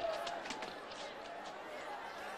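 Crowd of many voices calling out at once, with a sharp knock about half a second in.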